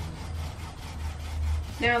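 Foam sponge paint roller rubbing and squishing wet paint onto the top of a wooden bedside table, with a low steady hum underneath.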